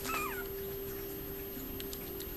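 A six-week-old Yorkiepoo puppy gives one short, high whimper that falls in pitch, right at the start.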